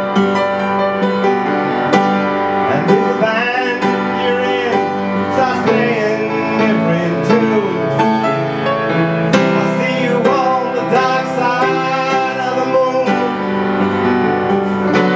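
Upright piano played with chords throughout, while a man's voice sings long, wavering notes without clear words.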